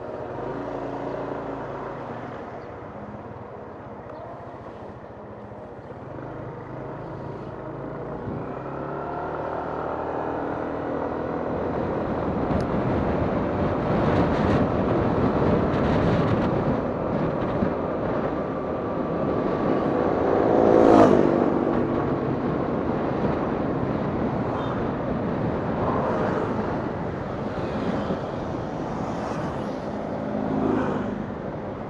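A Yamaha 155 cc single-cylinder scooter engine idles, then pulls away and rises in pitch as the scooter gets up to road speed. Wind rushes over the microphone throughout. A louder rising engine note comes about two-thirds of the way through, and the engine eases off near the end as the scooter slows.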